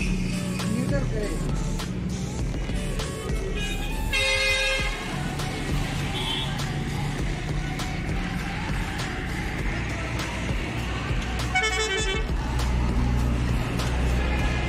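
Vehicle horn honking twice: a short honk about a third of the way in and another near the end, over background music and a steady low hum.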